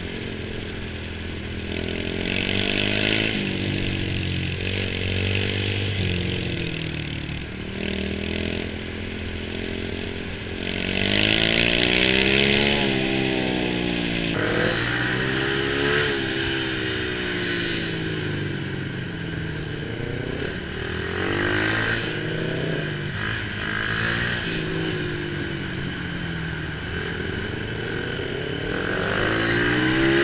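Kawasaki KSR motorcycle engine heard from the rider's seat, its pitch rising and falling again and again as it speeds up and slows down. Wind rushes over the microphone.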